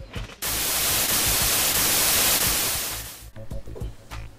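A burst of TV-style static hiss, used as a transition effect, starts suddenly a moment in and fades out after about two and a half seconds, over quiet background music.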